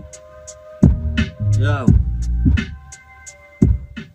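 Hip-hop beat with deep bass hits about a second in and again near the end, under held synth tones, with a brief vocal phrase in the middle.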